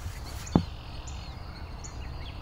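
Outdoor background noise with a low steady rumble, a few faint high bird chirps, and one sharp click about half a second in.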